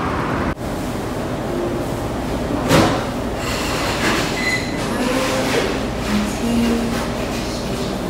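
A steady rumbling machine-like noise, with a brief clatter about three seconds in and a few short squeaky tones.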